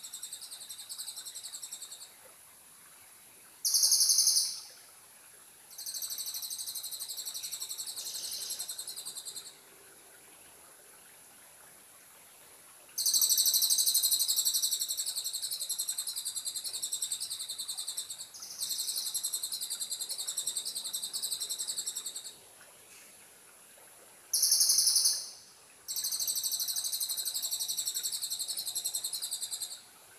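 High-pitched bird calls in repeated bursts of a few seconds each, starting and stopping abruptly with short pauses between them. Two briefer, louder bursts come about 4 seconds in and near 25 seconds.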